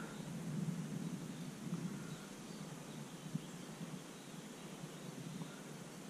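Quiet outdoor ambience on a river: a steady faint hiss with a low hum underneath and a single soft tick about three and a half seconds in, with no distinct sound standing out.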